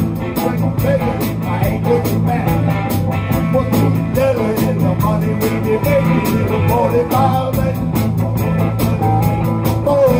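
Live band playing a rock song: guitars over a steady beat, loud and continuous.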